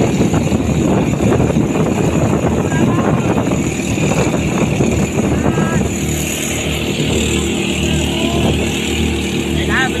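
Motorized outrigger fishing boat's engine running steadily under way, with a heavy rush of wind and water noise. The rush is strongest in the first half; after about six seconds the engine's steady hum stands out more clearly. Faint shouting voices are heard over it now and then.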